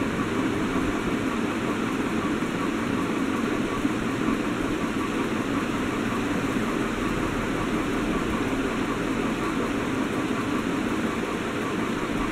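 Steady, even background noise with a low hum and hiss and no distinct events, like a room fan or air conditioner running.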